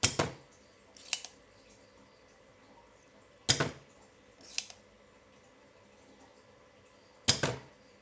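Spring-loaded desoldering pump (solder sucker) fired three times, each a sharp snap as the plunger shoots back to suck molten solder off a circuit board pad. The first two snaps are each followed about a second later by a lighter click as the pump is pushed down and latches, re-cocked.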